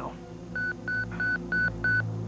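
Electronic pager beeping five times in quick succession, about three short high beeps a second, over soft background music: the page calls a doctor to the operating room.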